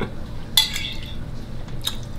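A metal spoon scraping and clinking against a ceramic soup bowl while soup is eaten: a short scrape about half a second in and a single sharp clink near the end.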